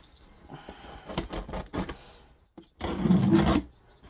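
A cardboard shipping box being opened by hand, its packing tape and flaps scraping and rasping in irregular strokes, with a louder, denser scrape about three seconds in.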